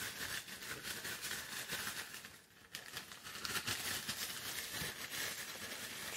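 A clear plastic zip-top bag full of paper slips being shaken and rummaged by hand: a continuous crinkling rustle that drops away briefly a little past halfway, then picks up again.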